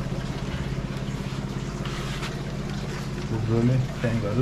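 Steady low electric hum with a fast flutter, from aquarium air pumps running.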